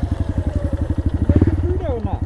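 Honda Grom's 125 cc single-cylinder engine idling with a steady, fast, even putter, a second motorcycle idling close alongside. The sound swells briefly about a second and a half in.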